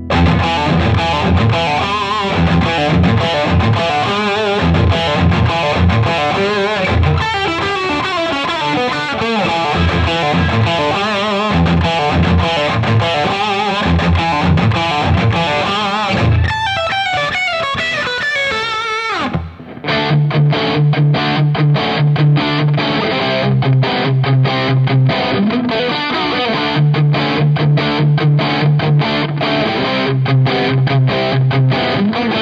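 Jackson JS22 Dinky electric guitar through high-output humbuckers, played with distortion: fast lead lines, then a descending run. After a brief break about two-thirds through, a rhythmic riff of repeated low notes in a darker tone.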